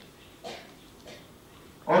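A pause in a man's speech through a microphone, with room sound and a couple of faint short sounds, then he resumes speaking Italian ("oggi") near the end.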